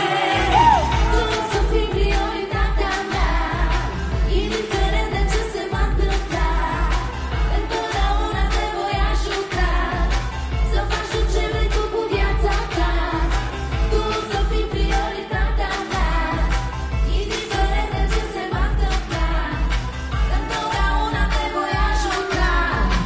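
A woman sings a pop song into a handheld microphone over a loud amplified backing track with a steady heavy bass beat.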